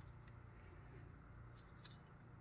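Near silence: a faint low room hum, with a couple of faint light ticks, one at the start and one near the end, from a wooden craft stick mixing acrylic paint in a cup.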